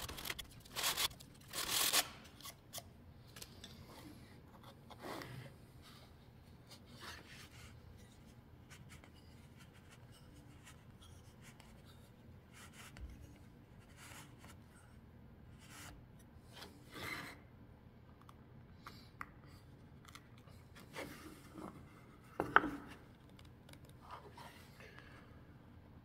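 Wooden dowel rubbing and scraping in short, scattered strokes as it is worked by hand through the drilled holes in the pencil box's wooden ends. A sharp click sounds a little over 22 seconds in.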